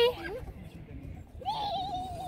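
A small child's high-pitched wordless voice: a short held note ending right at the start, then, from about one and a half seconds in, a wavering, sing-song call that bends up and down in pitch.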